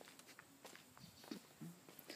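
Faint footsteps with a few small scattered clicks, barely above silence.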